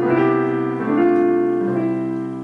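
Piano playing a short phrase of block chords, the chord changing about every second, with the last chord held and starting to fade near the end.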